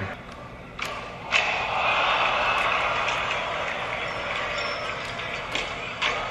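Two sharp skateboard cracks about a second in, from a board popped and landed, then a large crowd cheering that holds for several seconds and slowly dies down.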